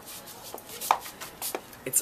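A handful of light, irregular taps over a faint hiss, one near the middle louder than the rest.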